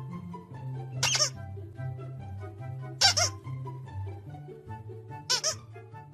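Squeaky plush toy squeezed three times, about two seconds apart, each a short high squeak, over background music.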